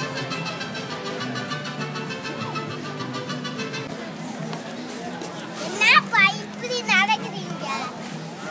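Outdoor crowd murmur with music playing in the first half. Later, a child's high voice yells out loudly twice in quick succession, about six and seven seconds in.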